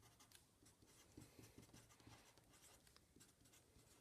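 Felt-tip pen writing on paper: a faint scratching of many short strokes as letters are drawn.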